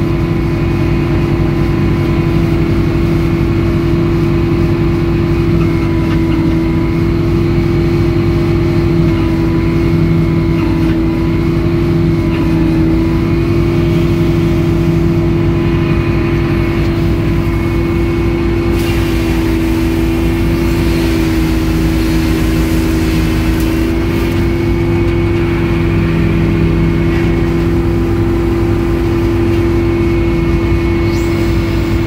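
Rebuilt Edmiston hydraulic circular sawmill running, its power unit and hydraulics making a loud, steady drone. About two-thirds of the way in, a harsh hiss joins the drone and lasts most of the rest of the time, as the big circular blade cuts through the log on the carriage.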